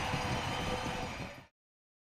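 Arena crowd noise, a steady wash of sound from the stands, that fades out about one and a half seconds in and then cuts to silence.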